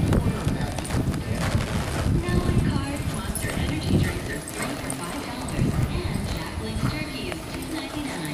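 Hoofbeats of a young Quarter Horse filly cantering on soft arena dirt, dull irregular thuds that are loudest as she passes close. A radio talks quietly underneath.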